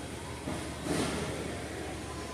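Steady background hum and hiss of a large retail store, with a faint brief murmur about a second in.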